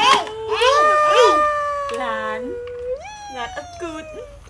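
A young child's long drawn-out exclamations of 'wooow', each held note slowly falling in pitch, with a fresh 'wow' starting about three seconds in.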